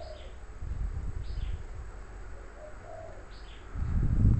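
Birds calling in the background: short, high, falling chirps every second or two, and a few short low calls, over a faint low rumble.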